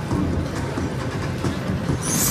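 Slot machine and casino floor noise: a steady, dense low rumble with no clear melody, as a free-games bonus is started.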